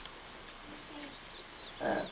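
A pause in speech: faint background with a few faint bird calls, and a man's voice resumes near the end.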